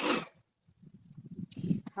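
A man coughs once, briefly, at the start. Low, irregular thudding and rumbling follows and grows louder toward the end.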